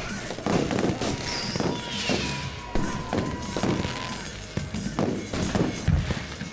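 Fireworks going off in a rapid series of sharp bangs and crackles, about two a second.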